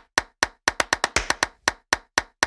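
Percussive transition sound effect: a quick rhythmic run of sharp, dry clicks like wood-block or clap hits, about five a second.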